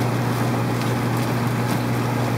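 Steady low hum and even hiss of a fish room's running pumps and aeration, with a couple of faint rustles of plastic fish bags.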